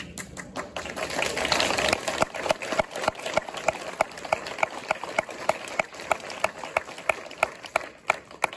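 Audience applause: a burst of many hands clapping that settles after about two seconds into steady rhythmic clapping in time, about three claps a second.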